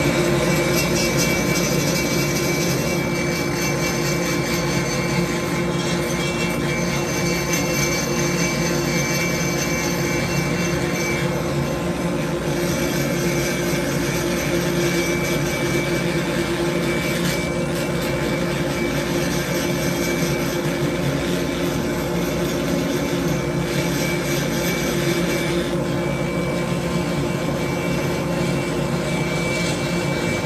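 A high-speed rotary grinder running steadily as it cuts and reshapes the ports of a Stihl 461 chainsaw cylinder, a continuous whine with small dips and swells as the bit works the metal.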